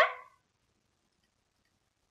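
A woman's spoken word trailing off in the first moment, then silence.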